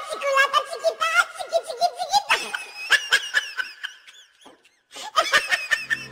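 A person laughing heartily in repeated bursts, with a short pause about four and a half seconds in before a final burst.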